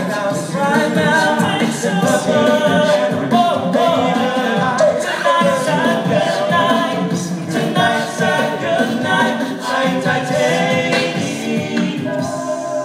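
Male a cappella group singing in close harmony through a stage sound system, with a steady percussive beat.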